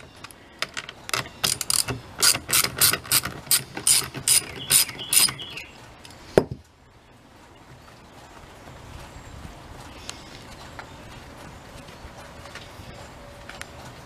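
Socket ratchet wrench clicking in a run of quick strokes, about three a second, as it loosens the bar nuts on a chainsaw's side cover. The strokes stop about five seconds in, followed by one sharp knock about a second later and then only faint handling.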